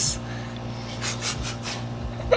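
A few quick breathy puffs of air about a second in, like a person's stifled, voiceless laughter or panting, over a steady low hum.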